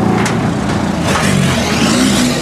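Škoda Fabia turbodiesel rally car driving off and pulling away, its engine revving, with a surge about a second in.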